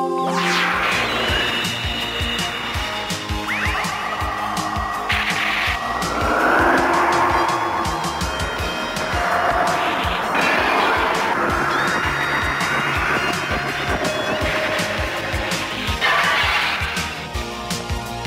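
Action music from an animated series, mixed with sound effects: many sharp hits and sweeping pitch glides.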